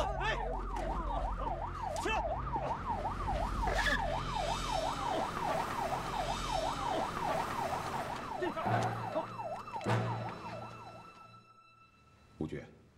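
Police car siren wailing in a fast yelp, its pitch rising and falling about three times a second, with a few thumps along the way, and fading away near the end.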